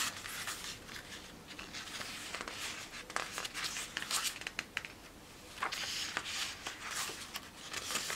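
Paper pages of an album photobook being turned by hand: soft rustles and short flicks of paper, with a quick cluster of flicks about halfway through.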